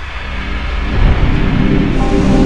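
Windows NT 4.0 startup sound, heavily distorted by an editing effect: layered synthesized tones swell over the first second, over a loud low rumble.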